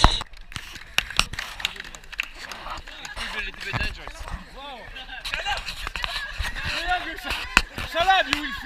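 Several people's voices chattering in a group, indistinct, with scattered sharp clicks.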